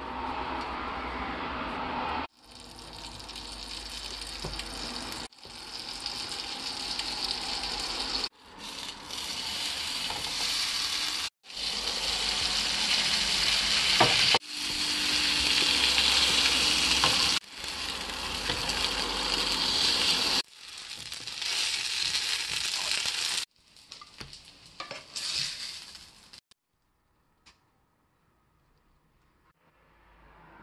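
Pambazo rolls soaked in guajillo chile sauce sizzling as they fry in oil in a frying pan. The sound comes in short clips that cut off abruptly every three seconds or so, and the sizzle stops near the end.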